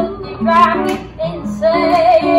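Acoustic guitar played under a small group of voices singing, women's voices prominent.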